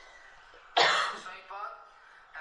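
A single loud cough that starts abruptly about three quarters of a second in and fades over half a second, followed by a short throat-clearing sound.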